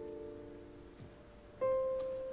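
Crickets chirring steadily in a high, even band under soft background music. The music's held notes fade slowly, and a fresh note comes in about one and a half seconds in.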